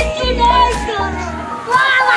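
Children's excited voices and shouts over background music with a deep bass, and a long falling tone gliding down in pitch.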